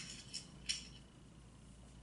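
Quiet room tone with two brief faint clicks in the first second.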